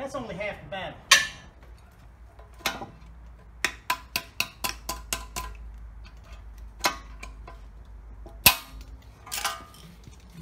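Sharp metal clicks and clinks of a steel pick and hand tools working at a wheel bearing seated in a steel steering knuckle, with a quick run of about four clicks a second in the middle and a loud single click near the end.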